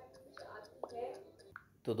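Faint, quiet speech with short pauses. A louder voice starts talking right at the end.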